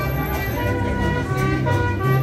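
Mariachi band playing: sustained melody notes over a guitarrón bass line that changes note about halfway through.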